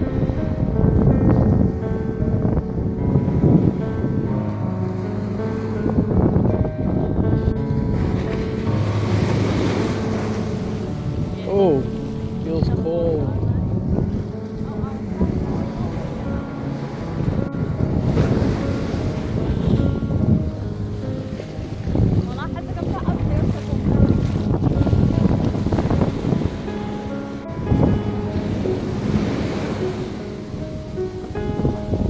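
Ocean surf washing up the beach with wind on the microphone, under steady background music.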